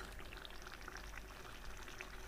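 Thick curry of jackfruit seeds simmering in a wok: a faint, steady bubbling crackle of many small pops.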